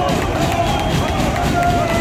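Football crowd in a stadium stand: nearby supporters' voices, some drawn out like chanting, over steady crowd noise.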